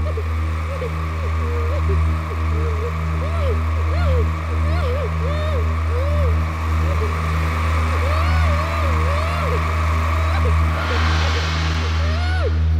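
Dark horror film underscore: a heavy low drone that pulses slowly, with short wavering, voice-like calls rising and falling above it, and a hissing swell that rises near the end.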